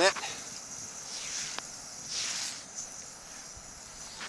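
Backpacking canister stove burning steadily on a four-season isobutane–propane–butane mix, its burner hissing even while the canister sits on snow in the cold. The hiss swells briefly twice.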